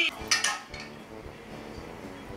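Hollow plastic stacking cubes clattering as a baby's tower of them is knocked over, one brief clatter about half a second in.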